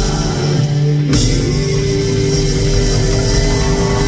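Live folk band of double bass, banjo, acoustic guitar and drums playing the final bars of a song. The drums and the full band come in hard about a second in, and a long note is then held.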